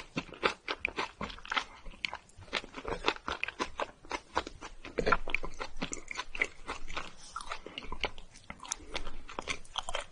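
Close-miked chewing of fruit-filled mochi rice cakes: a dense run of quick mouth clicks and smacks, a little louder from about halfway.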